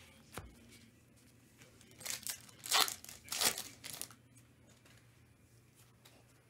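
A trading-card pack wrapper torn open and crinkled: a light tap near the start, then a run of quick tearing rips about two seconds in, the two loudest close together.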